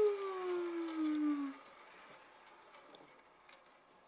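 A person's voice holding one long, slowly falling "oooh" tone, a playful spooky sound effect, that ends about a second and a half in; after it only faint clicks.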